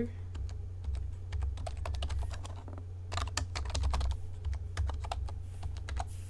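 Typing on a computer keyboard: a run of irregular key clicks with a short lull about two to three seconds in, over a low steady hum.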